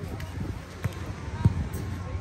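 Two dull thumps about half a second apart, the second louder, over faint voices.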